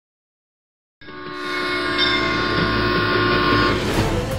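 A train horn sounding one long, steady chord over a low rumble. It starts about a second in and stops just before the end.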